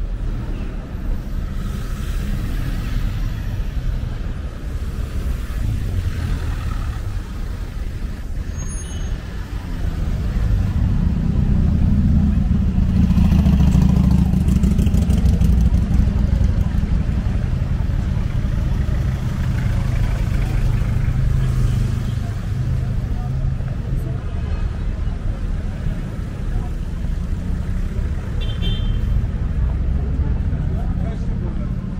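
Busy city street traffic: cars and vans running past close by, with a deep engine rumble that swells from about ten seconds in and eases off after about twenty seconds, over the murmur of pedestrians.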